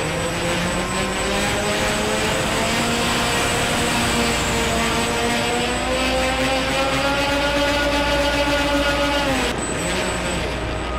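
A radio-controlled model airplane's motor and propeller running in flight, heard from a camera on the plane with wind rushing over it. The pitch climbs slowly, then falls off sharply just before the end as the throttle is pulled back.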